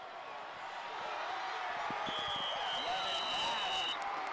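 Stadium crowd cheering and shouting, growing louder as a touchdown run finishes. A long, shrill whistle sounds from about halfway in and holds to the end.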